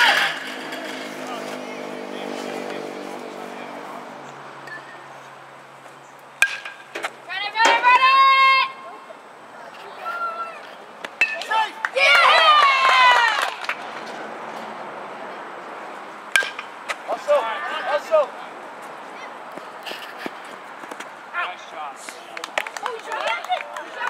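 Shouts and calls from players and spectators at a youth baseball game, in loud bursts, with several sharp knocks of ball and bat or glove and a low steady hum in the first few seconds.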